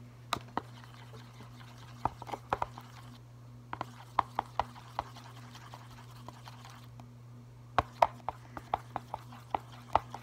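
A pen stirring paint into lotion in a container: irregular taps and clicks of the pen against the container, in short clusters, with soft wet mixing sounds between.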